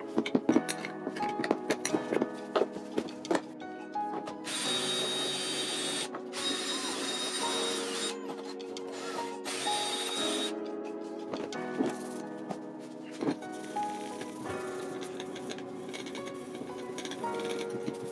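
A chill-beats backing track plays throughout. A cordless drill spins a small wire brush against the motorcycle's brake arm to strip corrosion, in three runs of high, gritty whirring between about four and ten seconds.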